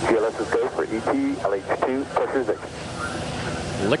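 Speech: a person's voice talking, with a short pause near the end.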